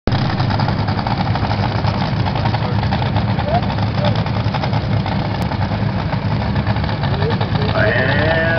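Racing drag boat engines idling, a loud steady low rumble with a fast, even pulse.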